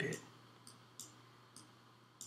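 Three faint, sharp computer mouse clicks, the loudest about a second in.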